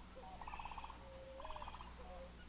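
Two short trilled animal calls, about a second apart, each a fast run of pulses over a held lower note, faint against the hiss of an old film soundtrack.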